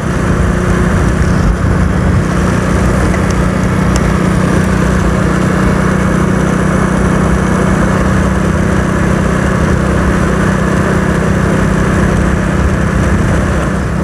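Motorcycle engine running steadily while riding at an even cruising speed, with wind noise on the microphone.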